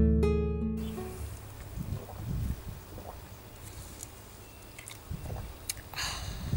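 Light plucked-string background music that cuts off abruptly a little under a second in, followed by faint outdoor background noise with a few soft low rumbles.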